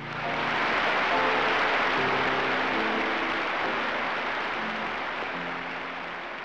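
Large audience applauding as a sung hymn ends. The applause starts suddenly and slowly fades, with soft sustained instrumental chords underneath.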